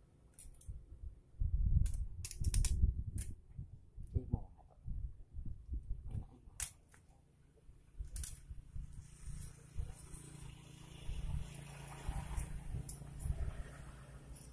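Hands fitting the head gasket onto a Honda Beat FI scooter's cylinder: scattered sharp metal clicks and light knocks, a quick cluster about two seconds in and a few more later, over low handling bumps.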